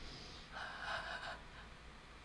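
A faint intake of breath, a soft gasp-like inhale, about half a second in and lasting under a second.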